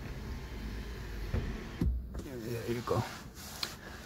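Electric moonroof motor of a Mazda CX-30 running as the glass panel slides, a steady low hum for about two seconds that ends with a dull thump.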